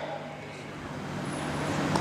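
A pause in speech: the voice's echo fades away in the first half-second, leaving steady low background noise with a faint hum.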